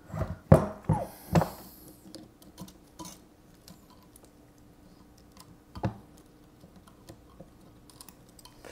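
Small clicks and taps of metal tweezers working against the plastic and metal parts of a telescope mount's opened housing: several close together in the first second and a half, then scattered light ticks and one more tap near six seconds, over a faint steady hum.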